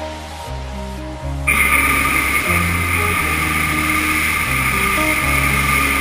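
Background song with a hot air balloon's propane burner firing over it: a steady loud roar that starts suddenly about a second and a half in and holds to the end.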